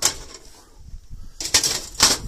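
Thin titanium sheet-metal panels of a folding wood-burning stove rattling and scraping as the top plate is handled and set onto the stove box, in two short bursts, one at the start and one about a second and a half in.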